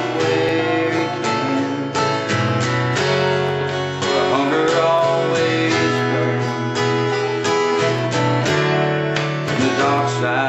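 Country song played live on an acoustic guitar, strummed in a steady rhythm, with an electric guitar playing along through a small amplifier.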